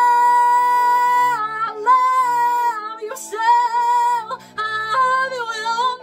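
A woman singing, belting a long held high note for about a second and a half, then carrying on with shorter sung phrases, over a lower musical accompaniment.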